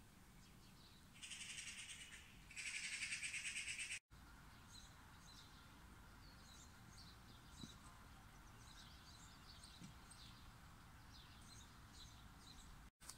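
Faint birdsong: many short high chirps and calls. Near the start, a louder harsh rattle pulsing rapidly runs for about three seconds, broken once.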